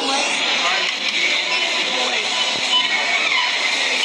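Muffled voices and music from a played-back video clip, under a steady hiss.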